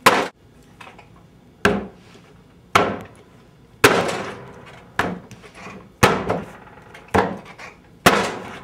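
A heavy log of wet clay slammed down onto a work table again and again, seven solid thuds about a second apart, as the block is turned and squared up between slams.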